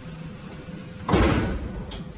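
A single heavy thud a little past a second in, fading out over about half a second, against a steady low hum.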